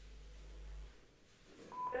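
A quiet pause over an open telephone line with a faint low hum. Near the end there is a brief steady tone, and then a woman caller begins speaking through the phone line.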